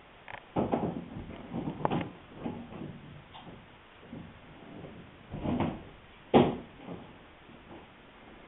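Steel C-clamps being handled and adjusted on a wooden boat rail: a series of irregular scrapes and knocks, the sharpest about six seconds in.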